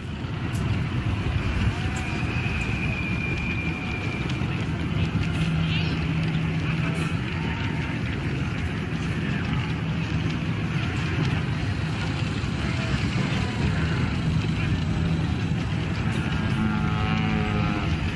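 Ambient background track of a busy desert town: a steady rumble and hiss with indistinct voices mixed in.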